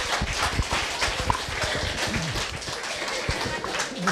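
Audience applauding, a dense patter of irregular hand claps at the close of a talk.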